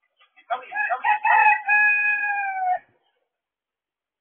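A rooster crowing once: a crow of about two seconds that starts in short broken notes and ends in a long held note falling slightly in pitch.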